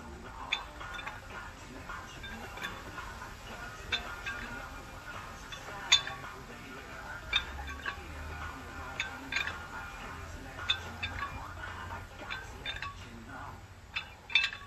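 Metal weight plates clinking on the handle of a plate-loaded dumbbell as it is swung, sharp clinks every second or so, over music.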